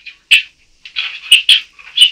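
Only speech: a man's voice in a muffled, tinny room recording, short bursts of words (about gloves he flushed).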